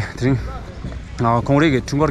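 A man's voice talking to the camera, in two short stretches of speech over a steady low rumble.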